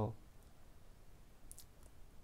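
The end of a spoken word, then quiet room tone with two faint clicks about a second and a half in.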